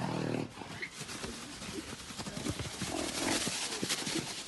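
Arabian stallion: a short, low, throaty vocal sound at the very start, then irregular hoofbeats on sand as it moves about the arena.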